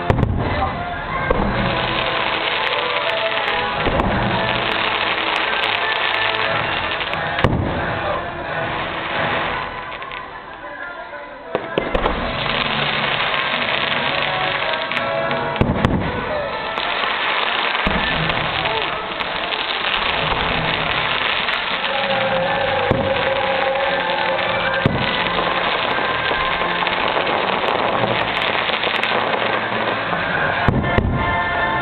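Aerial fireworks shells bursting in rapid succession over the show's soundtrack music. There is a quieter spell about ten seconds in, then dense bursts start again.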